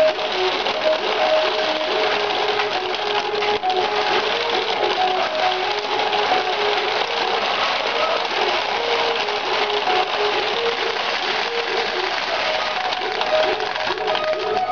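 Ukiyo-e pachinko machine playing its electronic melody over a dense, continuous rattle of steel balls running through the machine, as in a fever (jackpot) round.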